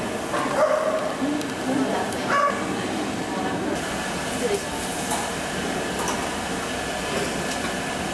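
Steady background noise of a busy hall, with a few brief, indistinct voices near the start and faint clicks later.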